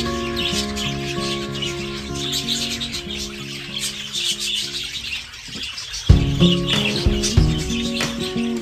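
Background music with held notes and a bass line, with a flock of budgerigars chirping over it. The music thins out about five seconds in and comes back with a loud beat about a second later.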